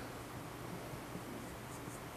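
Quiet auditorium room tone: a faint, even hiss with slight rustling from the seated audience.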